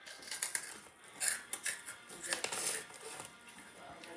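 Freeze-dried candy being chewed: a run of short, crisp, irregular crunches, with some rustling of the plastic snack bag in hand.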